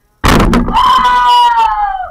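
A sudden loud noisy burst, then a high-pitched scream held for over a second, falling slightly in pitch.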